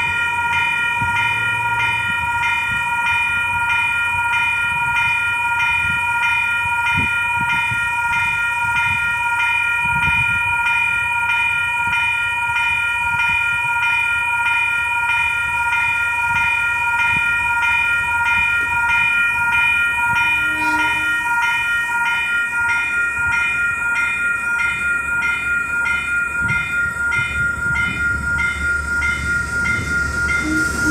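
Railway level crossing alarm bells ringing on a steady, even beat. A diesel locomotive's rumble grows louder near the end as the train approaches.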